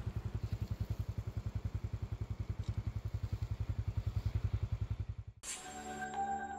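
A small engine idling with a steady, low, rapid putter of about a dozen beats a second. It cuts off near the end, where music with ringing tones begins.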